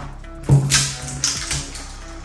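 The seal on a bottle's neck being torn and twisted off by hand, with a few sharp crackling rasps in the first second and a half. Background music with a steady beat plays underneath.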